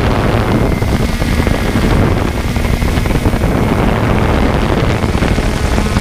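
Wind buffeting the microphone: a loud, continuous, fluttering rumble.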